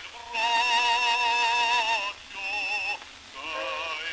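Bass voice singing an aria in Italian on an acoustic recording from about 1903, played from a 24 cm Pathé vertical-cut disc. A long note with wide vibrato is held from just after the start until about two seconds in, then two shorter sung phrases follow.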